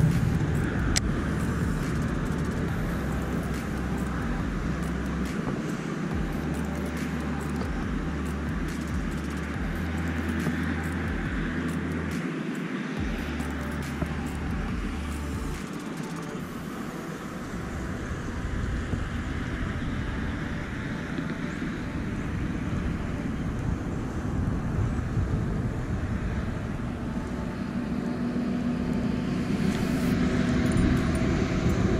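Steady hum of distant road traffic, with a low rumble through roughly the first half that stops about sixteen seconds in.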